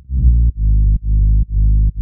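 A deep, distorted synth bass playing on its own, with nothing above the low end, its notes cut off and restarting on every beat, about two a second.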